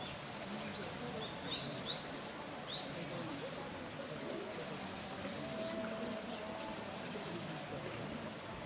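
Shallow mountain stream running steadily over rocks, with a bird giving a few short rising chirps in the first three seconds. High, buzzy pulsing trills repeat in short bursts every second or two.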